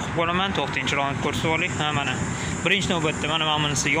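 A man talking over a steady background hum.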